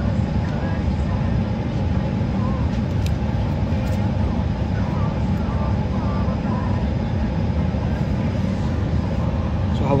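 Airliner cabin noise heard from inside the cabin: a steady low rumble at an even level throughout.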